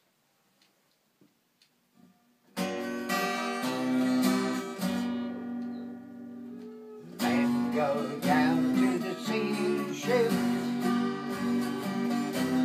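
Twelve-string acoustic guitar strumming the introduction to a folk song: near silence for about two and a half seconds, then strummed chords, one left ringing and fading around the middle before the strumming starts again.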